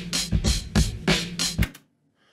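A soloed drum loop playing back in Cubase, a steady beat of sharp hits about four a second, with an EQ boost around 2 kHz dialled in to make the snare snappier. The loop is already peaking above 0 dB. Playback stops abruptly about three-quarters of the way through.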